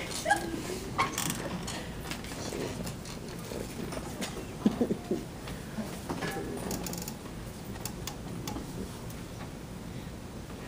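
Quiet classroom room noise with scattered light clicks and rustling, and a short, low squeak-like sound about halfway through.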